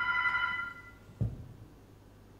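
A desk telephone's electronic ring, one steady trilling tone that stops less than a second in, followed by a single low thump about a second later.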